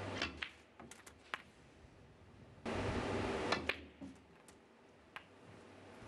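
Snooker balls clicking: a handful of sharp, separate clicks from cue tip on cue ball and ball striking ball, spread over the first second and a half, with a lone click later. A noisy burst of about a second comes in the middle, with two more clicks inside it.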